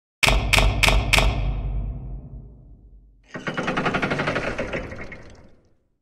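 Logo intro sound effect: four quick heavy hits with a deep boom under them that dies away over about two seconds, then a rapid fluttering swell about three seconds in that fades out before the end.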